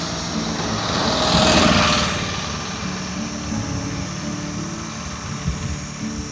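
Small mini pickup truck passing close by on a highway: its engine and tyre noise swell to a peak about a second and a half in, then fade as it drives away.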